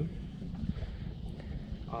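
Wind rumbling on the microphone, a steady low buffeting noise with no distinct mechanical rhythm.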